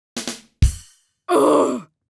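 Short cartoon sound-effect sting: a quick hit, then a deep drum thump, then about half a second of harsh, growling sound falling in pitch.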